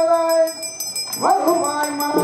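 Devotional bhajan singing: a voice holds one long note that ends about half a second in, then a new phrase begins with a rising swoop a little after one second, over fast, even jingling percussion such as a tambourine.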